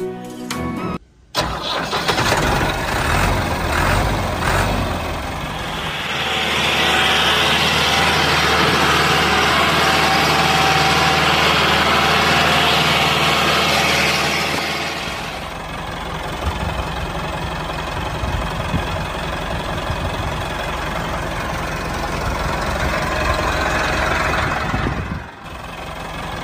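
Tractor engine starting and then running, in several edited segments: a brief break about a second in, a louder stretch from about six to fifteen seconds, and another break just before the end.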